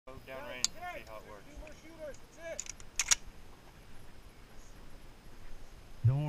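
Faint talking for the first two and a half seconds, then two sharp clicks in quick succession about three seconds in, with a lighter click near the start.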